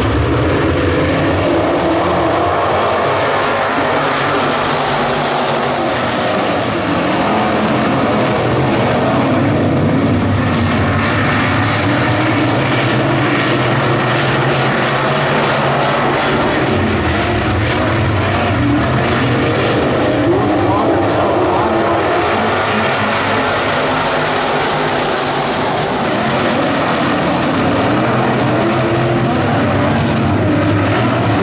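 A pack of IMCA Modified dirt-track race cars with V8 engines running hard in a continuous loud drone, the engine notes rising and falling as cars accelerate and pass.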